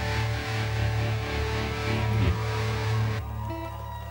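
Live rock band with electric guitars holding a closing chord over bass and cymbal wash. The chord cuts off sharply about three seconds in, leaving a low steady hum.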